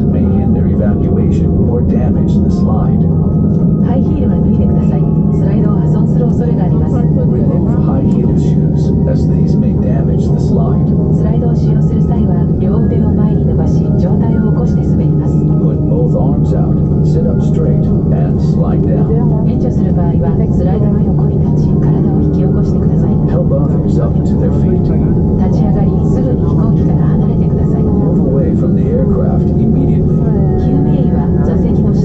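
Steady, loud low hum inside a stationary Boeing 787 airliner cabin, with indistinct passenger chatter over it.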